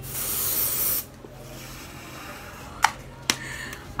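Aerosol deodorant spray sprayed under the arm in one hissing burst lasting about a second. Two sharp clicks follow near the end.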